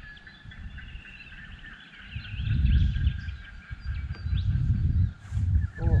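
Small birds chirping and trilling in the background. From about two seconds in, an irregular low rumble on the microphone grows louder than the birdsong.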